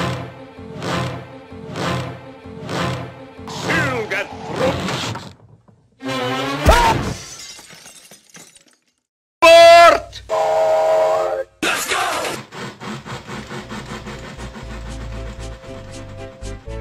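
Spliced cartoon soundtrack: a pitched music passage pulsing about once a second, then a crash with a falling tone about six seconds in. After a brief silence come a very loud pitched squeal and a held tone. Near the end, quick regular chuffs of a steam train speed up as it pulls away.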